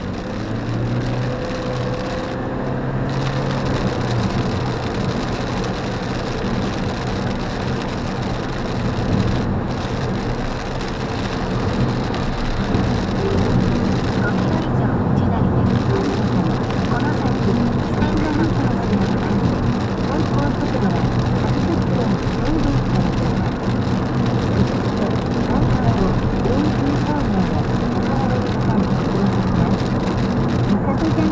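Steady cabin noise of a car driving at speed on a wet expressway in rain: tyre hiss on the wet road with a low drone from the engine and road.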